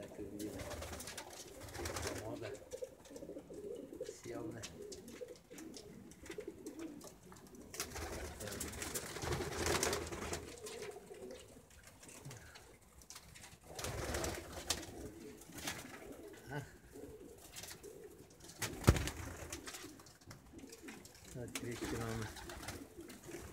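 Homing pigeons cooing in a loft, a low, wavering call repeated throughout, with scattered rustling and one sharp knock about three quarters of the way through.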